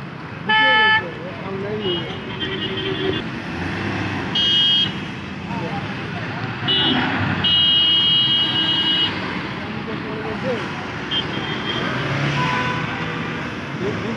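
Vehicle horns honking several times over passing road traffic: a short loud blast about half a second in, more short toots, and a longer blast of about a second and a half in the middle.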